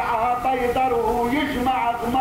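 Male voices singing a drawn-out, wavering melodic line, in the manner of a Lebanese zajal chorus chanting the refrain between verses.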